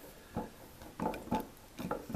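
About four light metal clicks and clinks as the primary planet carrier is worked into place by hand in a Simpson planetary gear set.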